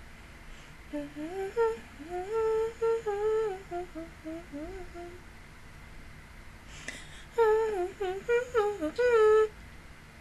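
A woman humming a tune to herself, closed-mouthed, in two phrases: a longer one of about four seconds, then after a pause a shorter one near the end. A faint click comes just before the second phrase.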